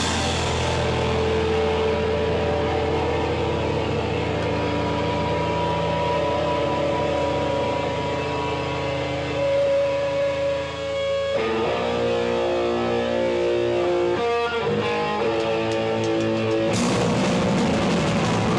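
Live rock band played loud in a club: the drums drop out and electric guitar and bass ring on held notes, shifting to a new run of notes about two-thirds of the way through. Near the end the drums and full band come back in.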